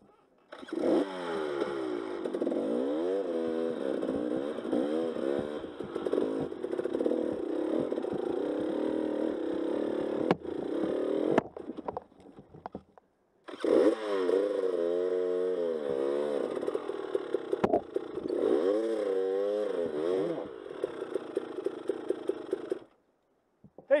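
Dirt bike engine revving up and dropping back again and again at crawling speed on a rough trail. It falls quiet for about two seconds midway, runs more evenly near the end, then cuts off.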